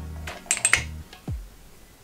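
A quick run of sharp clicks about half a second in as the chrome puzzle balls knock together while a piece is fitted onto the wooden pyramid base, over background music with a steady low bass that stops about a second in.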